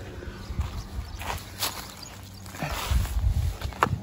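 Handling and rummaging at a bicycle's top-tube frame bag: scattered sharp clicks and knocks with rustling and a low rumble about three seconds in.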